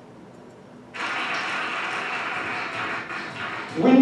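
Soundtrack of a keynote video played through classroom speakers, starting suddenly about a second in with a steady rushing noise, with a man's voice beginning near the end.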